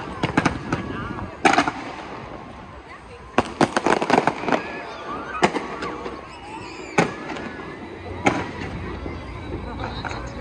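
Fireworks going off: sharp bangs a second or two apart, with a quick volley of reports about three and a half to four and a half seconds in.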